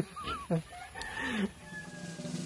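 Chickens calling faintly: a few short, wavering calls, then a longer drawn-out call about a second in.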